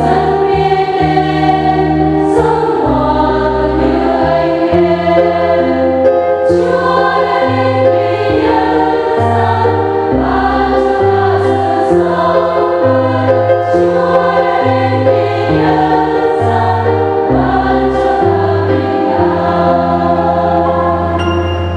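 Choir singing in harmony, with held chords that change every second or so, unbroken throughout.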